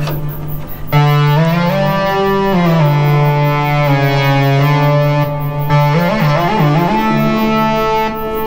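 Behringer 2600 analog synthesizer playing a few long held notes of a rich, buzzy multi-oscillator tone, with portamento turned up so the pitch slides from each note into the next.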